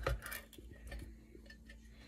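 Ring-pull lid of a tin food can being peeled back from the rim: a few small metallic clicks and ticks, strongest in the first half second.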